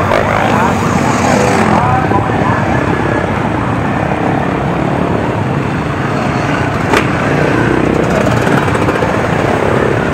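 Engines of a procession of off-road dirt bikes running at low speed as they ride past, several at once. Their pitch rises and falls with the throttle, most plainly in the first couple of seconds. A single sharp click comes about seven seconds in.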